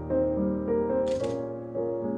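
Fujifilm X-S20 camera's shutter firing once, a short click about a second in, over soft background piano music.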